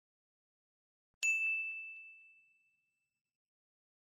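A single bright ding about a second in, a chime sound effect accompanying an animated logo. It rings on one high note and fades away over about a second and a half, with two faint ticks just after the strike.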